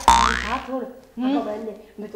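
An added comedy sound effect: a sudden hit whose pitch falls quickly over about half a second, followed by a short stretch of speech.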